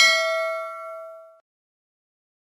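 Bell ding sound effect from a subscribe-button animation, played as the notification bell is clicked: one bright ring with several pitches that fades out about a second and a half in.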